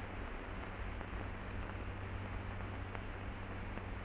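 Steady hiss and low hum of an old film soundtrack, with a few faint clicks.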